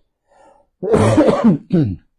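A man clearing his throat: a faint short rasp, then a loud, voiced clearing lasting about a second.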